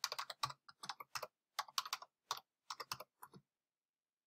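Typing on a computer keyboard: a quick, uneven run of keystrokes that stops about three and a half seconds in.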